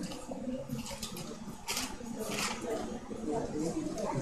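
Bible pages being rustled and turned while looking up a passage, with a couple of clearer page-flip rustles partway through, under faint background voices.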